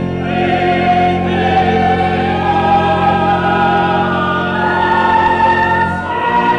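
Cathedral choir singing slow, long-held chords, the top line climbing step by step over a steady low bass.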